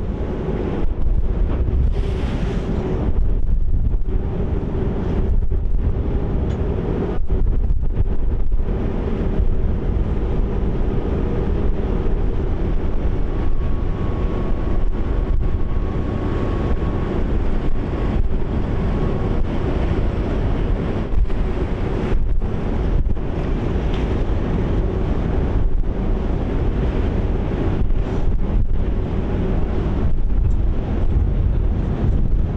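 Wind buffeting the microphone on the open deck of a moving Emerald-class harbour ferry, over the steady hum of the ferry's engines and water rushing past the hull.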